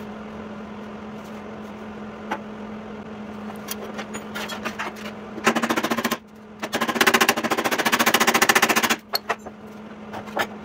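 Hammer blows on the steel of an old truck running board: a few scattered taps, then two long runs of very rapid, evenly spaced metallic strikes, the second lasting about two seconds. A steady low hum sits underneath throughout.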